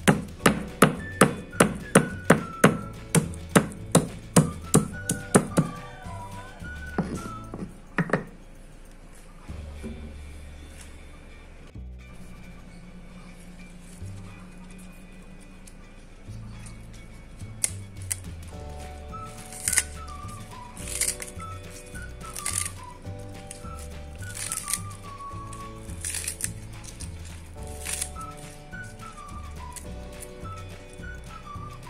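Stone pestle pounding a piece of galangal against a stone mortar to bruise it: a quick run of sharp knocks, about two or three a second, for the first six seconds, then two more single knocks. Background music plays under it and carries on alone afterwards.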